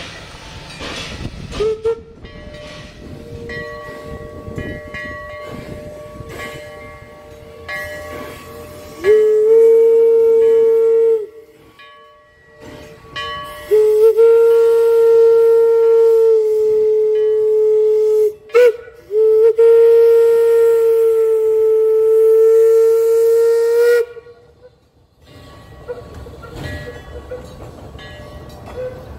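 Steam locomotive chime whistle on a 4-4-0, sounding a multi-note chord. It blows softly at first, then loudly in the grade-crossing signal: long, long, short, long. After the last blast the train keeps rumbling past.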